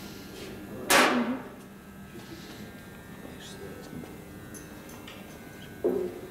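A small glass bottle set down on a steel machine table: one sharp clunk about a second in that fades within half a second, then a shorter, weaker knock near the end.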